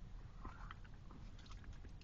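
Faint chewing of a soft Jolly Rancher Fruit Chew candy: small scattered mouth clicks over a low steady hum.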